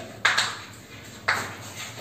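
Chalk writing on a blackboard: two sharp strokes of the chalk against the board about a second apart, each trailing off in a scratchy scrape.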